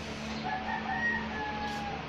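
A rooster crowing once, a drawn-out call of about a second and a half that falls slightly at its end, over a steady background hum.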